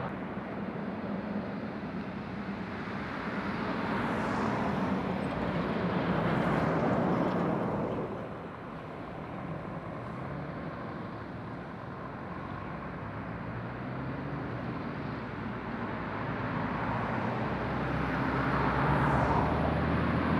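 Road traffic, with diesel engines and tyre noise from lorries and cars moving through a roundabout. The noise swells as a vehicle passes about five seconds in, then grows louder toward the end as a Scania articulated lorry approaches and draws close.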